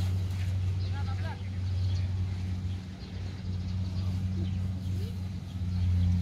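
An engine idling with a steady low hum. Short distant calls or voices come in about a second in.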